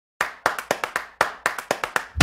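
Hand claps in a tight repeating rhythm, the same short pattern played twice, each clap with a brief echoing tail.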